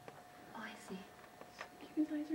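Faint whispered or murmured speech, soft and broken, with a few small clicks and a thin steady tone underneath.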